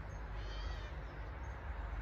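A faint, high animal call, about half a second long, about half a second in, over a steady low rumble.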